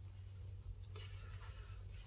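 Faint rubbing of a gloved hand sliding a sheet of film across a matte backing board, a brief scuff about half a second in.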